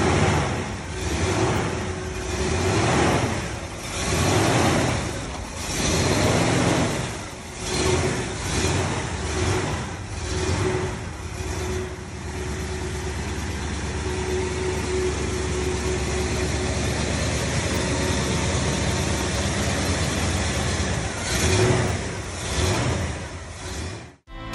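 The 455 V8 of a 1970 Oldsmobile 442 revved in repeated short blips, about one every second and a half, then settling to a steady idle for several seconds before two more revs near the end.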